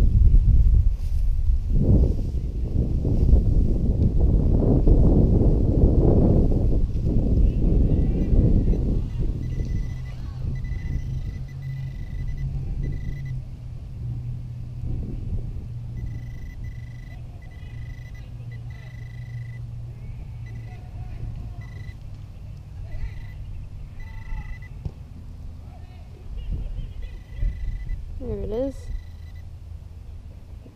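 Loud rustling and scraping of wood-chip mulch for the first several seconds, then a handheld pinpointer probe giving a high electronic tone that switches on and off in short bursts as it is worked through the hole, homing in on a buried penny.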